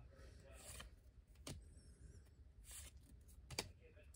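Near silence with a few faint rubs and light ticks of trading cards being slid off a stack held in the hand.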